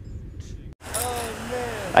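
Low outdoor background noise, cut off by a brief dropout under a second in; then a man's voice, drawn out and gliding up and down in pitch, begins speaking.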